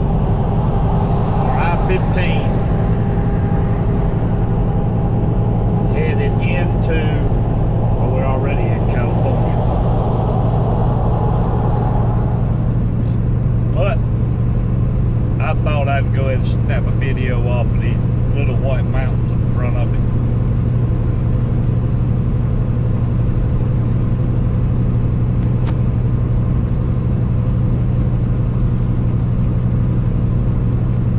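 Steady low drone of a semi truck's diesel engine and road noise inside the cab at highway cruise. Indistinct voices come and go through the first two-thirds.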